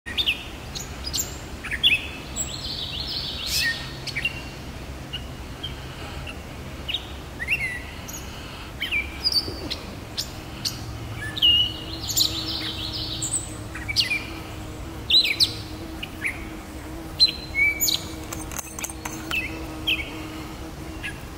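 Gray catbird singing: a long, rambling run of short, varied notes (chirps, squeaky glides and clicky notes), each a fraction of a second, strung into phrases with brief gaps between them.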